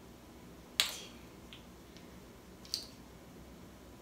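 White plastic measuring spoons on a ring clicking against each other as they are sorted through by hand: two sharp clicks about two seconds apart, with a fainter tick between them, over quiet room tone.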